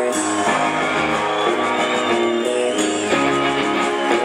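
Live rock band playing an instrumental passage, with guitar chords to the fore.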